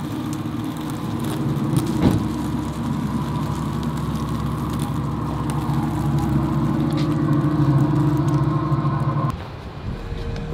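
Audi e-tron GT moving slowly at low speed, giving a steady low electric hum made of several held tones, with a sharp click about two seconds in. The hum cuts off suddenly shortly before the end.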